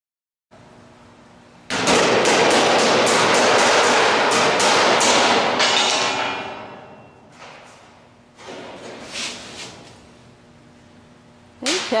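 Large sheet of aluminum being flexed and wrestled into place, rattling with quick repeated bangs, about three a second, loud for about four seconds and then dying away, with quieter rattles a little later.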